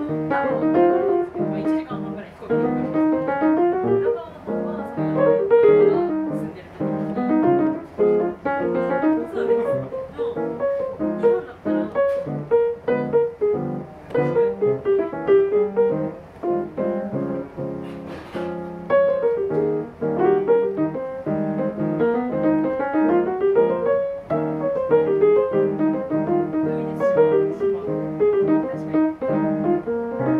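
Solo jazz piano played live on a grand piano: quick melody lines in the right hand over chords in the left, continuous.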